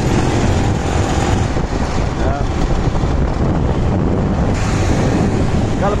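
Wind buffeting the microphone of a moving vehicle, a loud steady rumble with road traffic noise underneath.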